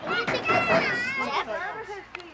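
Children's voices at play: high-pitched calls and chatter of several children, with a long rising-and-falling call about half a second in.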